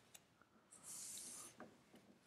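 Near silence: room tone, with a faint, brief high hiss about a second in.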